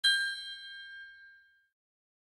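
A single high chime struck once as a logo sound effect, its several ringing tones fading away over about a second and a half.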